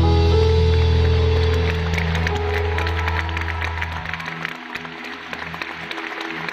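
Live band holding a long chord on guitars, bass and keyboard that fades out about four seconds in, while audience applause and cheering build underneath.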